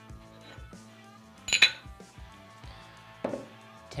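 Metal harmonic balancer parts clinking as they are set and stacked on a digital scale: one sharp metallic clink about a second and a half in and a lighter knock near the end, over soft background music.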